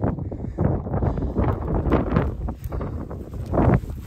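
Wind buffeting a phone's microphone, with irregular rustling and knocks of handling and footsteps through sagebrush.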